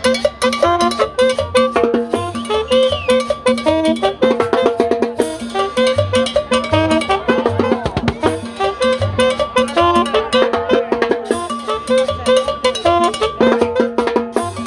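Live band playing upbeat salsa-style dance music with drums, cymbals and an upright double bass, over a steady beat.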